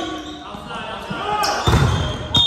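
Volleyball players shouting to each other in a gym hall, with a loud thud of the volleyball being struck or landing near the end.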